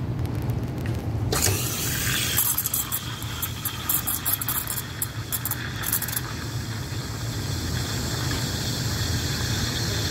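Espresso machine steam wand switched on about a second in, hissing into a pitcher of milk: a sputtering, crackling hiss for a few seconds while the tip draws air into the milk, settling into a smooth, steady hiss as the milk is spun and texturing, over a low machine hum.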